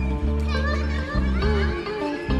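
Live rock band playing steady, sustained bass notes with a low guitar wash, with children's playground shouts and chatter mixed in over the music.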